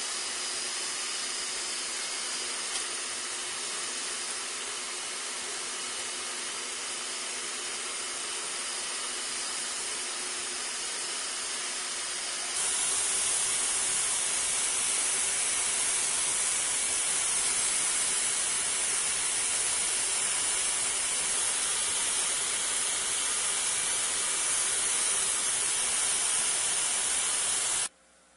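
Vacuum-forming equipment running: a steady rushing air hiss from its motor. It steps up louder about halfway through and cuts off suddenly at the end.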